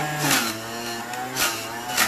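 Electric juicer motor running with a steady hum while beetroot is pressed down its feed chute, the hum dropping slightly in pitch under the load. Short crunching bursts come about a third of a second in, near the middle and at the end as the beet pieces are ground.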